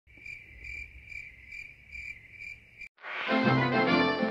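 A high, cricket-like chirping trill that pulses about twice a second, cut off suddenly about three seconds in. Music then fades in for the last second.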